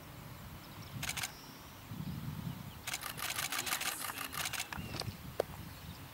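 Camera shutter clicking: a short burst about a second in, then a longer rapid burst of shots, about eight a second, lasting nearly two seconds.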